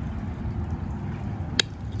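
A single sharp snip of pruning shears cutting through a branch of an Operculicarya decaryi, about one and a half seconds in, over a steady low background rumble.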